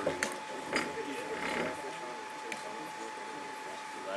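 Faint, indistinct murmured speech with a steady high-pitched hum underneath and a few light clicks.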